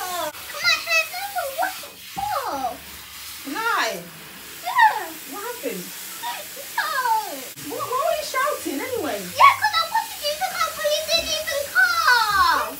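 A young girl's high-pitched, distressed cries and exclamations, without clear words, over the faint hiss of a running shower.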